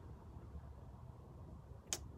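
Faint low background noise with a single short, sharp click near the end.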